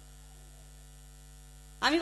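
Steady electrical mains hum from the stage sound system during a pause in talking. Near the end, a woman's voice comes in loudly through the microphone.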